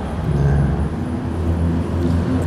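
A low, steady hum.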